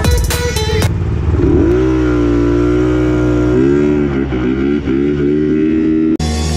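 Music for about the first second, then a scooter's engine accelerating: its pitch rises and holds steady, dips and wavers as the throttle changes, and holds again near the end.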